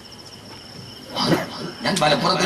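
A man coughs or clears his throat once into a microphone, a short loud burst about a second in, after a moment's pause in his talk. A faint steady high chirping of insects carries under it.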